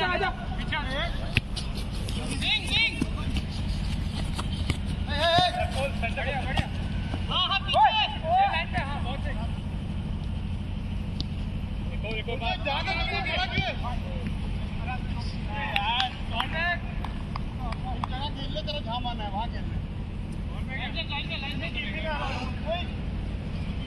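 Footballers shouting short calls to one another in bursts across the pitch, over a steady low rumble, with a few sharp knocks of the ball being kicked.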